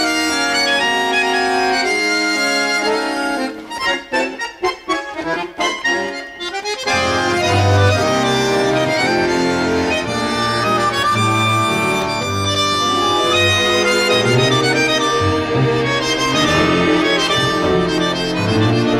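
Instrumental tango music led by bandoneon. Held notes give way to a run of short, clipped notes with gaps about three and a half seconds in, and about seven seconds in a bass line joins and the ensemble plays fuller.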